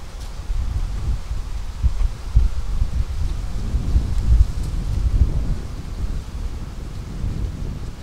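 Wind buffeting the microphone: an uneven low rumble that swells toward the middle.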